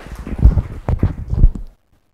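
Footsteps thumping on a hollow wooden stage and its steps, picked up through the stage microphones as four or five dull knocks with a few sharp clicks. The sound cuts off abruptly near the end.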